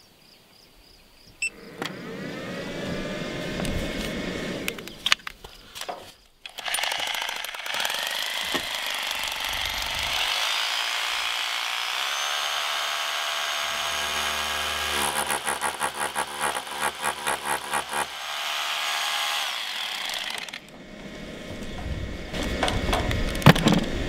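Bosch corded rotary hammer drill running off a battery power station: its motor spins up with a rising whine, stops after a few seconds, then runs again for about fourteen seconds. In the middle of that run it hammers in rapid regular blows for a few seconds, then winds down.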